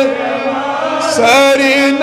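A man's voice chanting a Kashmiri naat into a microphone, drawing out long wavering notes with a brief break about halfway.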